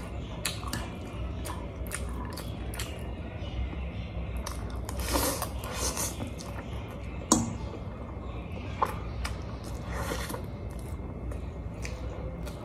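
Close-miked eating of spicy noodles: chewing, a slurp of noodles about five seconds in, and scattered clicks of a fork against a plate, the sharpest a little after seven seconds.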